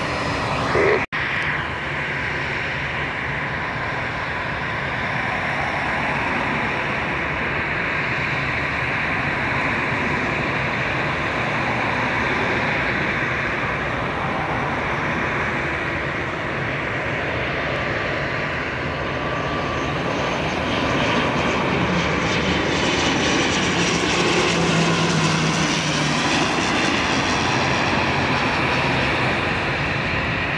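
A jet airliner's takeoff noise breaks off abruptly about a second in. Then an ATR 72 twin-turboprop airliner on final approach gives a steady engine and propeller drone that grows louder and brighter over the last third.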